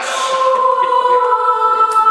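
Hip-hop backing track played loud over a PA, a chord of held, choir-like notes sustained through, with a brief voice-like flourish at the start.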